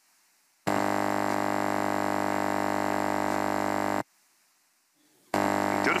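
A faulty conference table microphone giving a steady electrical hum with a buzzy, many-overtoned tone, switching on and off: it starts just under a second in, cuts out abruptly around four seconds, and comes back shortly before the end. The microphone is defective; another microphone without the hum is needed.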